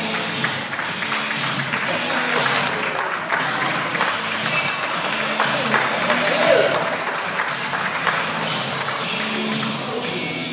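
Audience applause and voices over backing music that plays steadily throughout.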